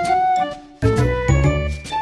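Background music: a light tune of bell-like, tinkling notes over a bass line, the notes changing every fraction of a second.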